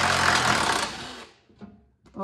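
A cordless power driver with a 13 mm socket running in one burst, spinning out a skid plate bolt, and stopping about a second and a half in.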